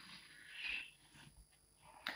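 Chalk scraping on a blackboard in faint, short scratchy strokes, the clearest one a little under a second in.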